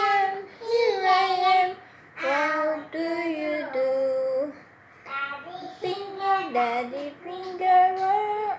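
A child singing without accompaniment, in phrases of held notes with brief pauses between them.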